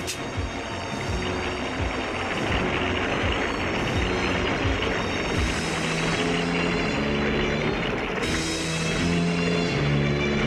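Cartoon sound effect of water pouring into a pit in a steady rushing roar, under background music whose held low notes come in over the second half.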